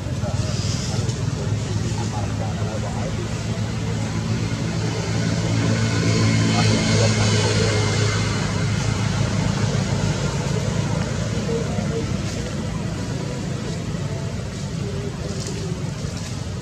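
A motor engine running steadily, growing louder toward the middle and easing off again.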